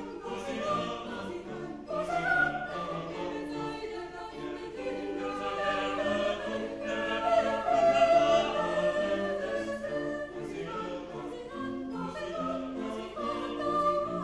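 Mixed chamber choir singing a classical piece in several parts, accompanied by cello and double bass.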